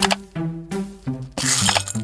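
Background music with a repeating tune; a sharp click at the start, then about a second and a half in, small hard-shelled candies pour out of a clear plastic ball and clatter into a bowl.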